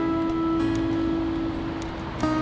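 Background music on acoustic guitar: a strummed chord rings on and slowly fades.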